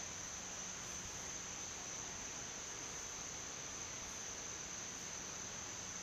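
Faint, steady high-pitched insect chorus, with a low hum underneath.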